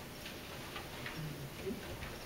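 Quiet room tone with a few faint, light clicks at uneven spacing, and a short low murmur a little past a second in.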